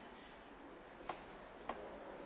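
A pause in the lecture: faint room hiss, with two faint ticks, one just after a second in and another about half a second later.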